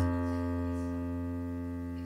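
A low left-hand F chord on a digital stage piano, held and ringing on as it slowly fades, with no new notes struck.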